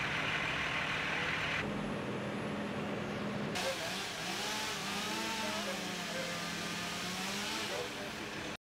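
Outdoor street sound with a heavy truck engine idling steadily, its low hum running under a changing hiss. Faint distant voices come in during the second half.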